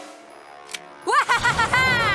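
Animated-cartoon sound effects over music: a low rumbling crash as a large vehicle skids through dust on grass, with a voice crying out in a wavering cry that rises and falls in pitch, starting about a second in.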